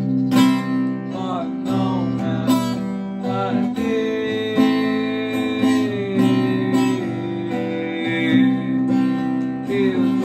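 Acoustic guitar strummed through a slow chord progression, with repeated strum accents over ringing chords, in what the player calls a spooky, haunting progression. A wordless voice hums or sings along, holding one long note that sags gently in pitch in the middle.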